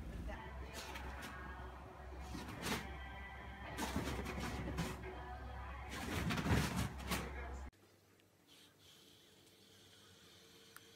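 Voices and music mixed with several thumps, the loudest about six and a half seconds in, cutting off abruptly near the end to faint room tone.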